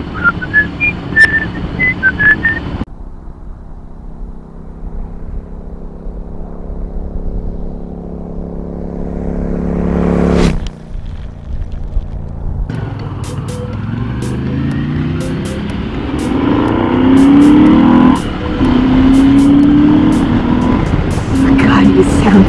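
A person whistling a tune over a motorcycle engine, cut off about three seconds in. Then intro music with steady held notes swells into a rising whoosh about ten seconds in. After that a motorcycle engine accelerates, its pitch rising and dropping back in steps as it shifts up through the gears.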